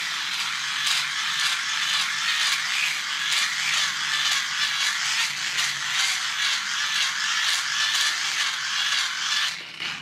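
Cheap hand-crank USB dynamo being cranked steadily, its plastic gears whirring and grinding with a fast, even pulse. It is loaded by a basic cell phone that it cannot generate enough power to charge.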